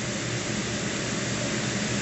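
Steady hiss with a faint low hum underneath, even throughout, with no distinct events.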